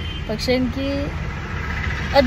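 Steady low rumble of a car heard from inside the cabin, with a woman's brief voice about half a second in.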